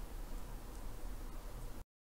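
Steady low hiss with a faint low hum: background noise of the voice-over recording. It cuts off abruptly to silence near the end.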